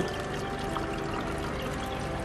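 Water running steadily through an aquarium internal back filter, pouring from the surface strainer inlets down into the filter chamber, with faint background music.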